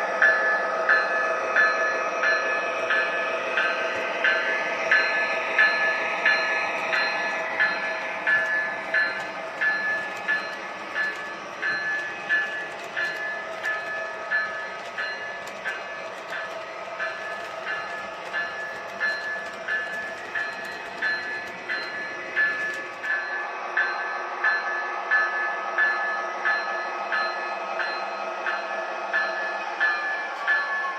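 MTH O-gauge GE Evolution Hybrid model diesel locomotive running past on three-rail track with a boxcar in tow, its motors and onboard diesel sound system humming steadily. A regular click comes about twice a second, and the low rumble drops away about three-quarters of the way through.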